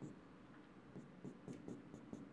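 Faint taps and short strokes of a pen on a board as a dashed line is drawn, a few light ticks spread over the two seconds.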